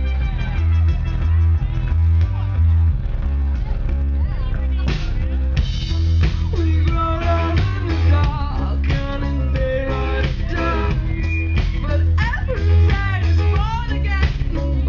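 Live band music: a heavy, pulsing bass line with electric guitar, played loud through a venue sound system. A woman's singing voice on a handheld microphone comes in about five seconds in.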